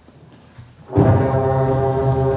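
A sixth-grade concert band enters together about a second in on a loud, sustained full chord, with low brass prominent. Before that there is only quiet hall sound.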